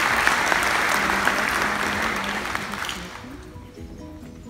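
Audience applauding, fading away about three seconds in.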